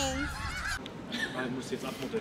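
A flock of snow geese honking. The calls end within the first second, leaving only faint background sound.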